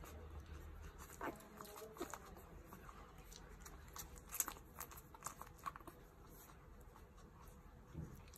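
Newborn puppies nursing from their mother: faint, scattered wet suckling clicks, with a couple of short squeaks about one and two seconds in.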